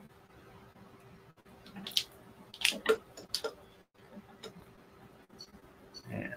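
Marudai tama bobbins knocking and clicking together as threads are moved across the mirror: a cluster of light clicks about two to three and a half seconds in, and a few fainter ones later, over a faint steady hum.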